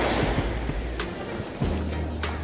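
Small waves washing up on a sandy shore, a steady rushing surf, with wind buffeting the microphone. A short sharp click about halfway through.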